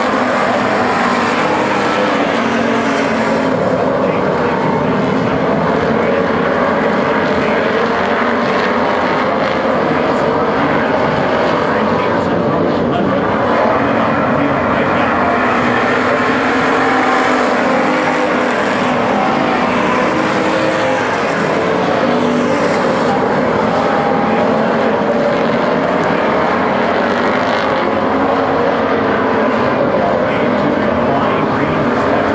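A pack of WISSOTA street stock race cars running their V8 engines at racing speed around a dirt oval track, a loud, continuous blend of engines.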